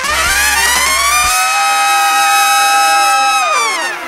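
A trumpet sweeps up into a long, loud held high note over a big band. The band's bass and drums drop out about a second in, leaving the note alone. Near the end the note falls off downward in pitch and the sound dies away.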